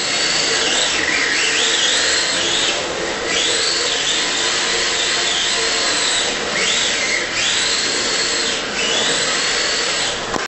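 Electric motor and gear drive of a Tamiya TT-01D radio-controlled drift car whining, the pitch rising and falling every second or two as the throttle is worked through slides and donuts, over a steady hiss.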